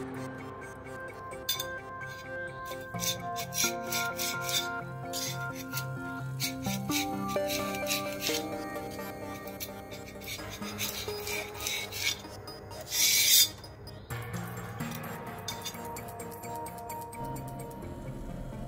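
Repeated scraping strokes of a flat tool across a resin 3D printer's build plate, clearing cured resin, with a louder scrape near the two-thirds point. Background music runs underneath.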